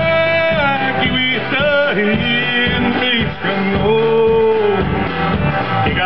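Live band playing a Cree-language song, a singer's voice over guitar and a steady bass, with a long held, wavering note about four seconds in.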